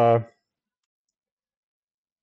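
The end of a drawn-out spoken "uh", then near silence.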